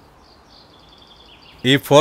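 Faint outdoor ambience with soft bird chirping, then a man's voice comes back in about a second and a half in.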